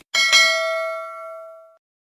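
A bright notification-bell ding sound effect, struck twice in quick succession, whose ringing tones fade out over about a second and a half.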